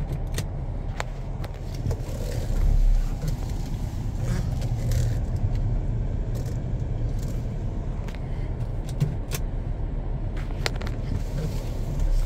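A car driving slowly, heard from inside the cabin: a steady low engine and road rumble, with scattered small clicks and rattles from the interior.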